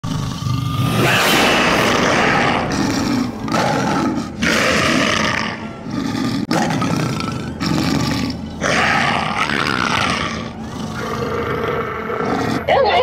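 Werewolf sound effect from a Halloween animatronic's soundtrack: a string of growls and roars, each about a second long, with short breaks between them.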